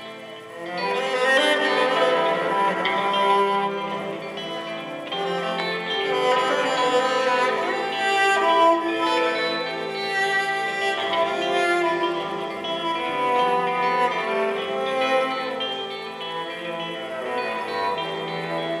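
Instrumental passage of a small live band: bowed cello with hollow-body electric guitar, the music swelling fuller about a second in.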